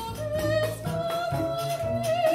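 A soprano voice enters a moment in and holds one long note with vibrato, over low bass notes and light hand percussion, in a Sephardic folk song arranged for voice, bass and percussion.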